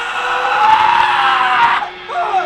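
A woman's loud, drawn-out scream, its pitch arching up and then sinking, cut off abruptly near the end.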